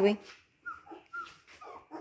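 Siberian husky puppy whimpering: two or three short, high-pitched squeaks about half a second apart.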